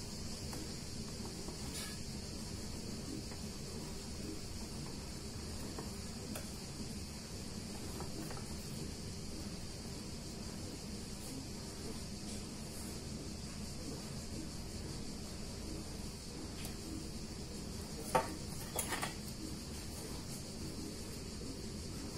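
Quiet kitchen with a steady faint high hiss as a soft cake is cut and lifted out. Near the end come a few sharp clinks of a ceramic plate and fork being handled.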